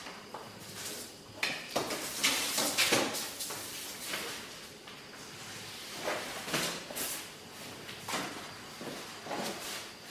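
Sheet of kraft paper rustling and a long wooden ruler sliding and scraping across it, as the paper is handled and marked out on a table. There are irregular swishes and a few light knocks as the ruler is shifted and set down.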